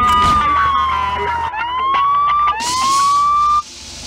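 A high, smooth electronic tone that is held, then sags slowly in pitch, followed by two rising whines of about a second each, each cut off sharply at the top.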